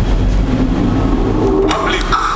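A film trailer's opening soundtrack: a low, steady rumble with a faint held tone in the middle, and voices coming in near the end.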